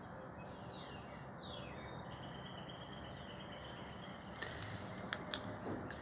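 Faint room tone with a few faint, high, falling bird-like chirps and a thin held whistle. A few light clicks come near the end.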